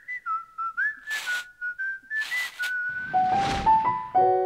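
Animation-studio logo sting: a whistled tune of short, gliding notes, broken by two quick swishing whooshes, then a swelling whoosh under a few notes stepping upward near the end.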